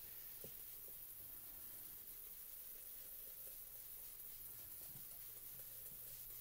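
Faint, steady scrubbing of a sponge ink-blending tool rubbed over smooth Bristol paper, with a low steady hum underneath.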